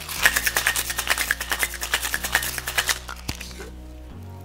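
Ice rattling hard inside metal Boston shaker tins in a quick, even rhythm as a gin Gimlet is shaken. The shaking stops near the three-second mark, followed by a single knock as the tins are broken apart.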